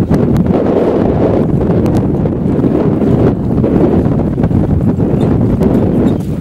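Wind buffeting the camcorder microphone: a loud, steady, low rumble.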